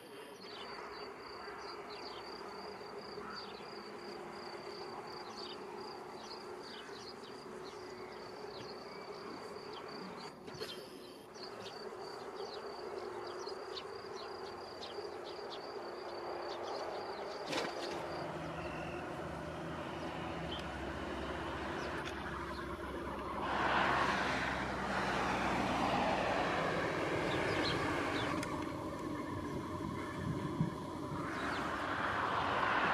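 A steady high insect trill with short chirps repeating through it, over a low steady hum, fades out a little past halfway. A distant engine rumble then builds and becomes the loudest sound over the last third.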